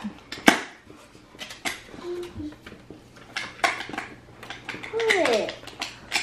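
Scattered light clicks and knocks of small objects being handled in a wooden tray, the sharpest about half a second in. A short voice sound with a falling pitch comes about five seconds in.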